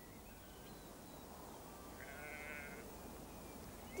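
A faint, short sheep bleat with a quaver in it, about halfway through, over a quiet background.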